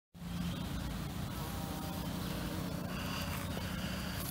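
Bumblebee buzzing in flight close to the microphone, a low steady hum over faint outdoor background noise.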